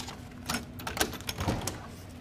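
A few light clicks and knocks as a resistance-band door anchor is handled and fitted at the edge of an open door.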